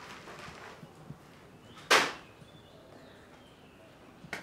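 A single sharp impact about two seconds in, short and loud, over faint room sound.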